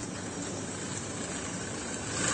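Steady background noise, an even low hiss with no distinct events.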